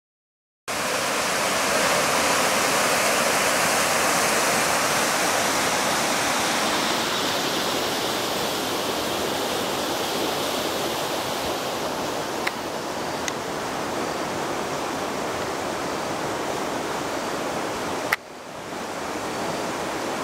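Steady rush of flowing river water, with a few sharp clicks about two-thirds of the way through and a short dip in the noise near the end.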